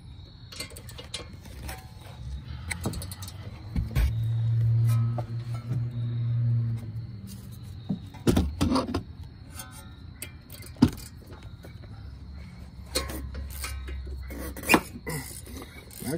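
Ratchet with a hex bit loosening front brake caliper bolts: scattered metallic clicks and knocks of tool on bolt and caliper. A steady low hum runs for a few seconds near the middle.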